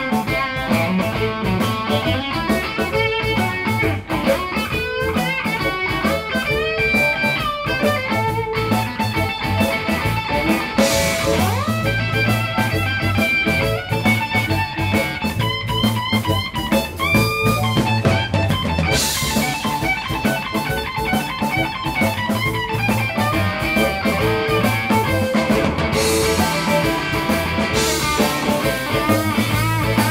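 Live blues band playing an instrumental stretch: electric guitar lead with bent notes over bass guitar and drums, with cymbal washes a few times.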